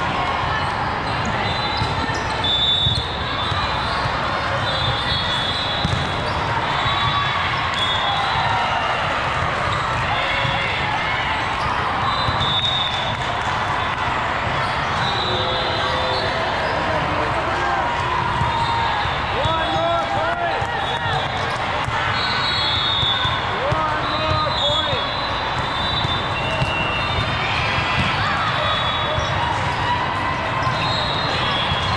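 Steady hubbub of many voices in a large sports hall, with volleyballs thudding against hands and floor from time to time and sneakers squeaking on the court.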